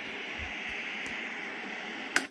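Steady static hiss from a Zenith television's speaker, the set showing snow with no signal.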